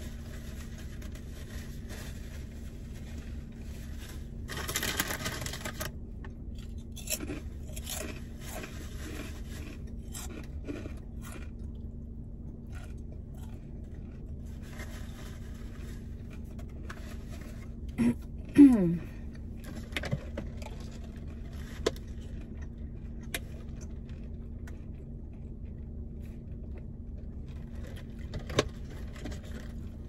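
A person chewing and eating a sandwich, with scattered small mouth clicks and a paper napkin rustling about five seconds in, over a steady low hum inside a car. About two-thirds of the way through there is a short falling 'mm' from her voice.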